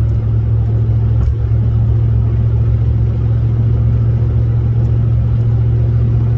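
Steady low drone of a vehicle's engine and road noise heard from inside the cab while driving.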